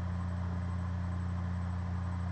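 Steady low hum with an even hiss behind it, unchanging in pitch and level.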